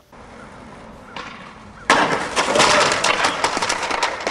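A low background hiss, then about two seconds in a sudden loud crash with dense clattering and cracking that goes on to the end.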